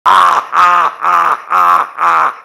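A man laughing loudly in long, drawn-out 'haa' syllables, evenly spaced at about two a second, four in all.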